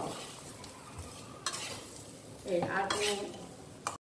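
A spoon stirring beef frying in a stainless steel karahi, with a light sizzle and a scraping burst about one and a half seconds in.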